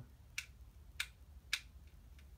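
Three light, sharp clicks about half a second apart, with a fainter one after: small screwdrivers being handled and tried on the battery-cover screw of a LEGO Mario figure.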